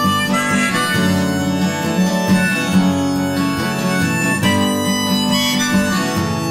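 Harmonica playing an instrumental interlude of held and changing notes over a strummed steel-string acoustic guitar.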